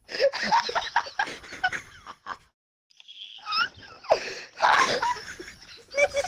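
People laughing hard and breathlessly, wheezing in bursts, with a short pause about halfway through and a few high, squeaky rising notes just after it.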